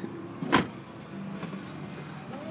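A sharp thump about half a second in, then a steady low hum from about a second in, inside a car.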